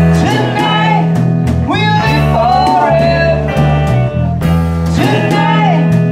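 A small rock band playing live: a male voice singing the melody over electric guitars, a bass line and a drum kit keeping a steady beat with cymbal hits.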